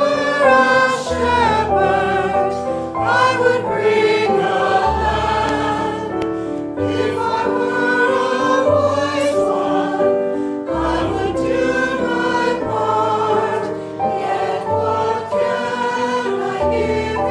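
A choir singing a hymn over sustained keyboard accompaniment, whose bass notes change about once a second.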